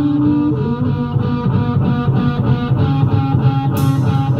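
Live rock band playing an instrumental passage without vocals: electric guitar and bass guitar over a steady pulse, with a cymbal crash just before the end.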